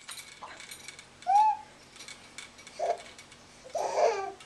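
Baby hiccuping: three short squeaky hiccups about a second to a second and a half apart, the first the loudest.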